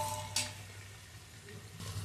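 Chopped onions and green chillies frying in a large aluminium pot with a soft, even sizzle. Near the start there is a metallic clink and ring from the steel ladle against the pot.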